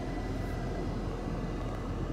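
2019 Alfa Romeo Giulia Ti's turbocharged four-cylinder engine idling steadily in Park, heard from inside the cabin as a low, even hum.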